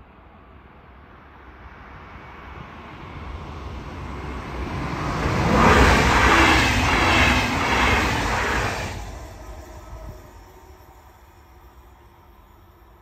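A DB Intercity 2 double-deck electric passenger train passing at speed. It grows louder as it approaches, its wheels running loud on the rails for about three seconds as the coaches go by close, then drops off sharply as the end of the train passes and fades away.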